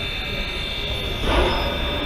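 Ab-class steam locomotive 608 'Passchendaele' standing in steam: a steady hiss with a low rumble beneath, and a short rush of noise just over a second in.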